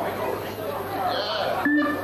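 Indistinct chatter of several people's voices, no words clear, over a steady low hum.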